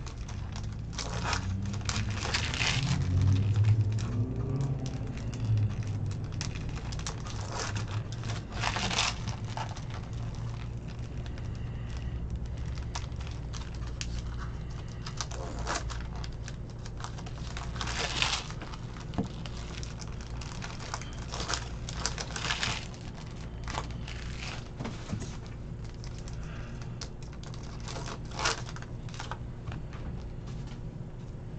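Foil wrapper of a Topps trading-card pack crinkling in irregular bursts as it is torn open and handled, followed by the cards being shuffled and set down. A steady low hum runs underneath.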